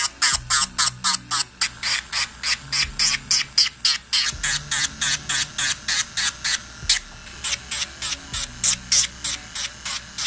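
Electric nail file (e-file) running with a medium-grit sanding band, grinding down the cuticle area of a plastic gel extension tip to thin it.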